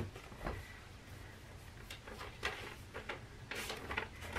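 Faint, scattered rustles and light knocks of a paper greeting card and its packaging being handled.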